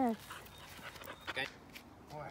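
Tibetan mastiff puppy panting softly, a few faint, irregular breaths.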